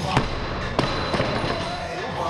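A loaded barbell with bumper plates dropped from overhead onto wooden lifting blocks: a heavy impact, a second about two-thirds of a second later, and a lighter knock as it settles.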